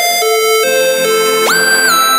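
Sylenth1 software synth lead playing a melodic dubstep melody, its notes gliding into one another, with a sharp upward slide about one and a half seconds in.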